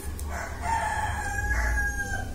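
A rooster crowing once: one call of nearly two seconds that dips in pitch at the end.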